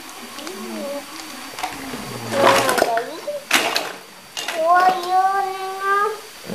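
A young child's voice, talking softly and then holding a long, steady sung-out tone near the end, with a brief sharp clatter in the middle.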